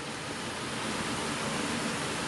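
Steady hiss of background noise in the recording, even and unchanging, with no distinct events.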